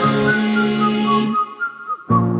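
Music: a whistled melody of short high notes over a held low note, without drums. About one and a half seconds in the low backing falls away, leaving the whistling nearly alone.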